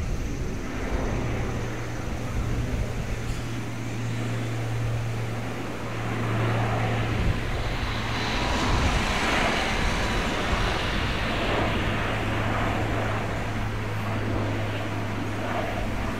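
Four Rolls-Royce AE 2100 turboprop engines and six-bladed propellers of a C-130J Super Hercules on approach. The sound is a steady low drone that swells in the middle and eases a little toward the end.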